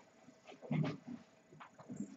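Faint marker strokes on a whiteboard while writing, a few short scratchy touches of the pen, with a brief low murmur of the voice a little before the middle.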